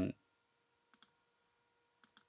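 Two faint computer mouse clicks in quick succession about a second in. A spoken 'um' trails off right at the start.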